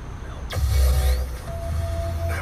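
A radio in the truck cab comes on suddenly about half a second in, playing music, over a low steady rumble from the truck.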